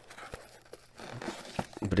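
Intermittent crinkling and rustling of bubble wrap, paper and cardboard as a graded card slab is lifted out of a shipping box, with a few light clicks of plastic.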